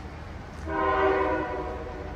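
Air horn of an approaching Norfolk Southern freight locomotive sounding one chord blast of about a second, starting just over half a second in.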